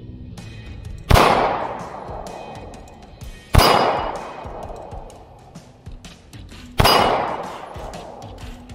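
Three single 9mm shots from a P80-built Glock 17 pistol with a ported slide, spaced two to three seconds apart, each followed by a long echo that fades away.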